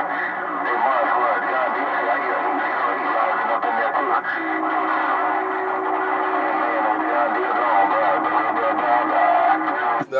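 Distant CB stations heard through the speaker of a President HR2510 radio on channel 6 (27.025 MHz). The voices are thin, narrow-band and garbled beneath several steady whistling tones, and a lower steady tone joins about four seconds in.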